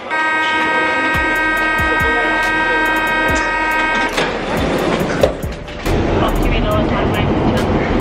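A metro train running, with a low rumble, and a steady buzzing tone over it for about the first four seconds.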